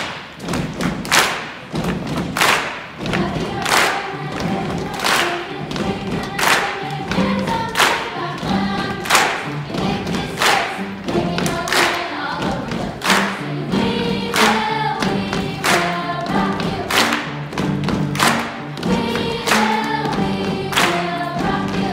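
Children's choir singing over a steady beat of sharp thumps, about one every two-thirds of a second.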